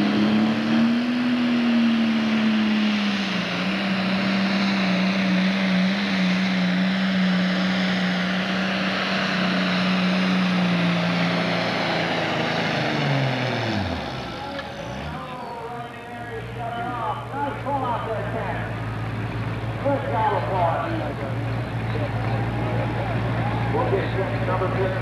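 Pro Stock pulling tractor's turbocharged diesel engine held at full throttle with a steady high pitch through the pull. About twelve seconds in the pitch falls away as the tractor comes off the throttle, and from about sixteen seconds on a lower steady idle hum follows.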